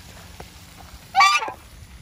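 White domestic goose honking once, a short call starting a little over a second in.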